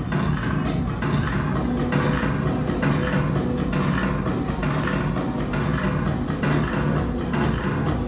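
Electronic dance music played loud over a club sound system, with a heavy steady bass beat. About two seconds in, a bright hiss fills the top end.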